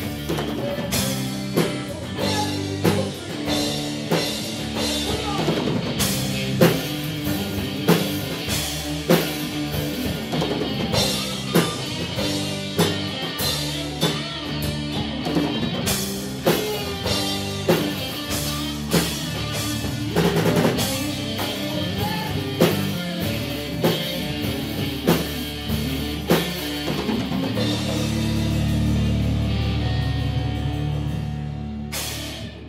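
Live rock band playing: a drum kit keeps a steady beat under electric and acoustic guitars and bass. Near the end the drums stop and a chord is held ringing.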